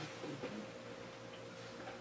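A pause in speech: quiet room tone with a faint steady hum setting in about half a second in.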